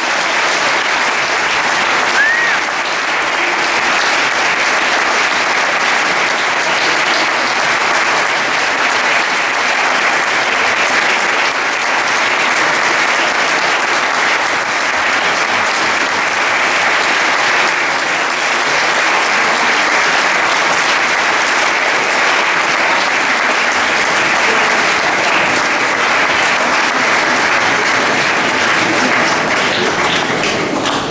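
Audience applauding steadily at the end of a concert band piece.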